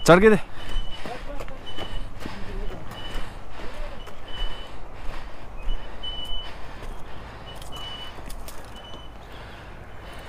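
A low steady engine rumble with a short, high electronic beep repeating at uneven intervals, about once or twice a second, and a few brief voices in the first seconds.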